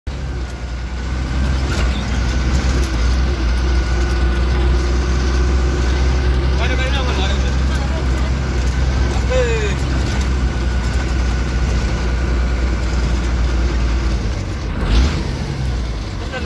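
Vehicle engine running steadily, heard from inside the cab while driving on a rough dirt road, with a short knock near the end.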